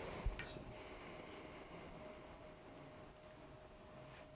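A brief knock with a short click just after it, about a quarter second in, from hands handling the camcorder on its tripod head. After that, quiet room tone with a faint steady hum.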